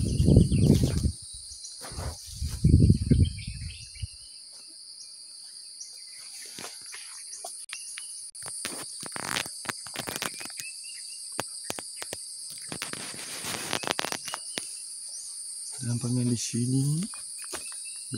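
A steady, high-pitched insect drone, two constant tones that run unbroken, with low rumbles on the microphone in the first few seconds and scattered rustling and crackling from about six to fourteen seconds in.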